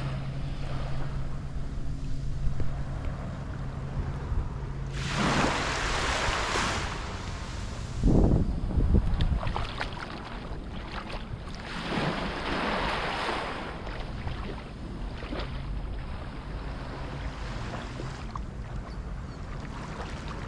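Small waves washing up onto a sandy beach, swelling and fading, with two larger washes about five and twelve seconds in. A steady low hum runs through the first six seconds, and a loud low buffet of wind on the microphone comes about eight seconds in.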